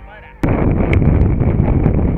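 Wind buffeting a helmet-mounted camera's microphone while riding a mountain bike downhill, a loud rough rumble that cuts in suddenly, with a few sharp clicks and knocks from the bike on the dirt trail.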